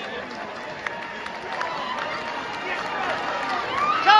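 A celebrating football crowd on the pitch: many voices shouting and cheering at once, with one voice rising in pitch near the end.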